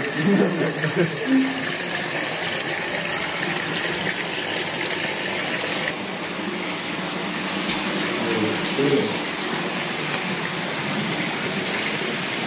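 Steady rush of running, splashing water from goldfish pond and tank water circulation. The sound shifts slightly about six seconds in.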